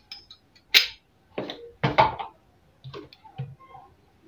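A few short, sharp knocks and clatters of kitchen utensils being handled at a sink, the loudest about a second in.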